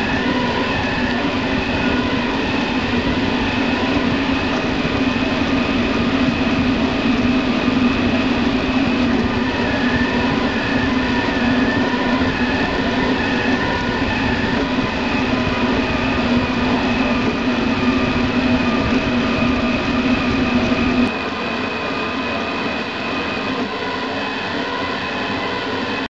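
Sintron Kossel Mini delta 3D printer's motors running: a steady mechanical whirring hum with several held whining tones, which drops to a quieter level about five seconds before the end.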